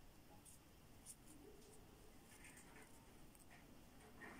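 Near silence with a few faint, short scratches of a metal crochet hook drawing polyester cord through stitches.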